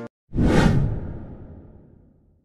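A whoosh sound effect marking an edit transition: it swells up quickly a moment in and fades away over about a second and a half.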